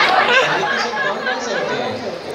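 Audience chatter in a large hall: many voices talking over one another.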